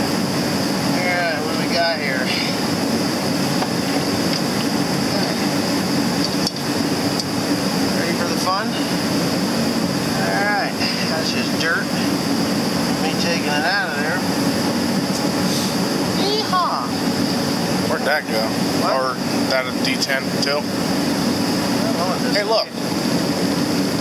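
A shop heater running steadily, a constant low hum with a thin high whine above it, under scattered indistinct voices.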